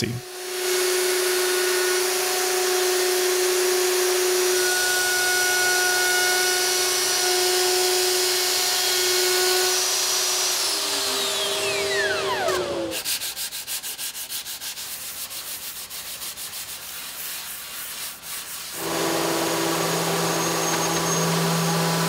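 Plunge router running at full speed as it cuts a fingernail profile along the edge of a walnut tabletop, a steady high whine; about ten seconds in it is switched off and its pitch falls as the motor winds down. A quieter stretch of fast, even ticking follows, and a few seconds before the end a random orbital sander starts with a lower steady hum.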